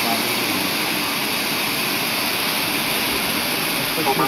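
Ground firework fountains (gerbs) spraying sparks with a loud, steady hiss.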